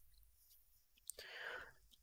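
Near silence, with a faint intake of breath a little past the middle.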